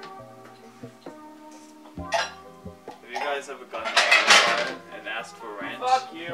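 Background guitar music with held notes, and dishes and cutlery clattering about two seconds in and loudest from about three to four and a half seconds.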